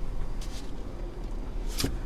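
Low, steady cabin rumble of a 2022 Jeep Grand Cherokee Overland moving off slowly, heard from inside the cabin, with one sharp click near the end.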